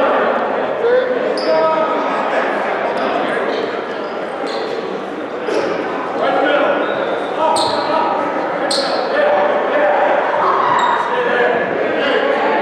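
Many voices talking at once in an echoing gymnasium, with a basketball bouncing on the hardwood floor every second or two at irregular intervals.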